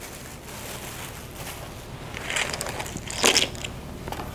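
Plastic bag crinkling and rustling as hands rummage through it, in bursts that peak about three seconds in.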